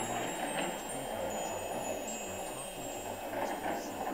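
Ambient meditation soundscape: high, tinkling wind-chime tones at scattered pitches over a steady, even wash of noise.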